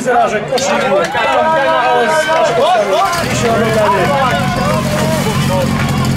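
Portable fire-sport pump's engine starting about three seconds in and then running steadily, under loud shouting voices.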